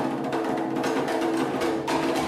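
Fast percussion for a Pacific Island dance show: rapid, steady drum strikes with a hard, wood-block-like click.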